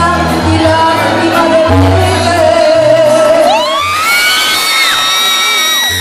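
Live Latin pop song recorded from within a concert crowd: a woman singing over a band with a pulsing bass line, her voice sliding up about three and a half seconds in to a long held high note that falls away at the end, with shouts from the audience.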